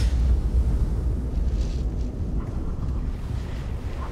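Mountain wind buffeting the microphone: a steady deep rumble with a faint hiss above it.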